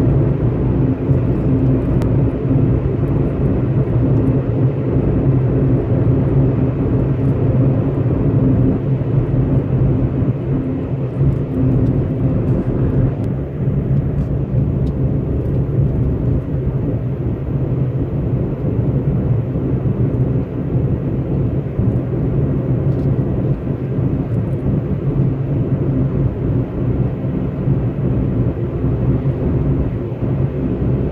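Engine and road noise heard from inside a moving vehicle at a steady cruising speed: a steady low drone with tyre rumble, dipping slightly in loudness about halfway through.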